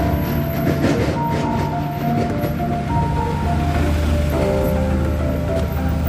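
Background music with sustained notes over a steady low drone.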